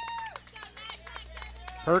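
Faint voices in the ballpark background picked up by the broadcast microphone. One distant voice holds a long call about the first half-second, and scattered faint voices follow.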